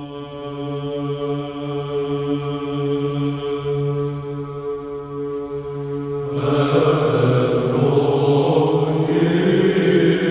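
Orthodox church chant: one long note is held steadily over a drone. About six seconds in, a fuller group of voices enters, louder.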